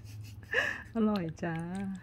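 Speech: a short breath about half a second in, then a drawn-out exclamation of 'aroi ja' ('delicious').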